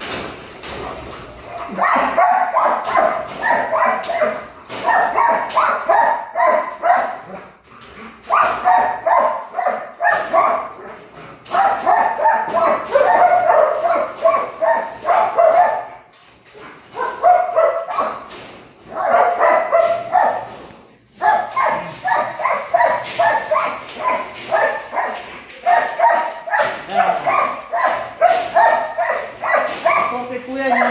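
A dog barking and yipping in fast strings of short, high calls, each run lasting a few seconds with short breaks between.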